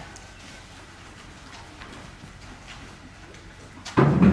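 A horse's hooves stepping slowly over soft dirt-and-hay arena footing: faint, irregular soft footfalls, with a louder thump right at the end.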